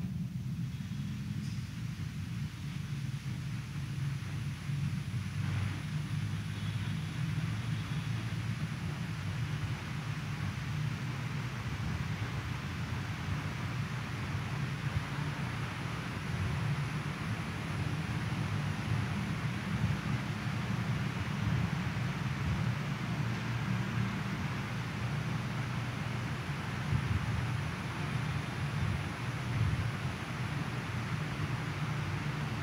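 Steady background rumble with a light hiss, and no speech or music.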